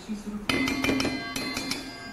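A spoon tapping several times against a stainless steel mixing bowl, knocking off chili flakes, with the bowl ringing after the taps.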